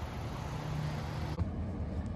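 A steady hiss of rain with a low car engine hum under it. About one and a half seconds in, the hiss cuts off and only a duller low hum remains, as heard from inside the car's cabin.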